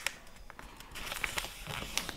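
Origami paper rustling faintly as it is folded and the crease pressed flat under the fingers, with a couple of small ticks, one at the start and one about half a second in.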